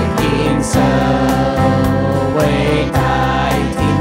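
Group of voices singing a hymn with instrumental accompaniment, keeping a steady beat.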